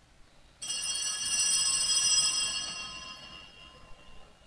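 A bright bell-like ringing of many high, steady tones sets in suddenly about half a second in, swells, then fades away over the next few seconds.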